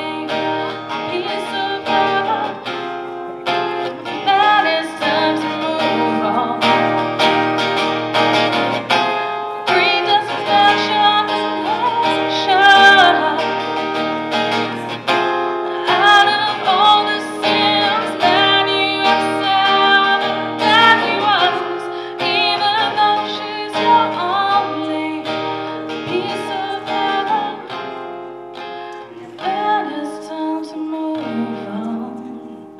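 A woman singing live, accompanying herself on a strummed steel-string acoustic guitar.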